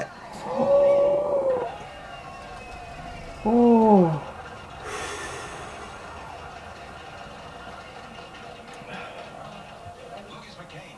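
A man's wordless vocal reactions to the burn of ghost pepper cheese: a high held note about half a second in, a falling groaning 'oh' at about three and a half seconds, then a breathy out-breath.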